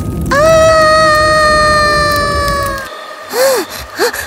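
A girl's long, steady scream, held at one pitch for about two and a half seconds over a low rushing whoosh, then a short exclamation near the end.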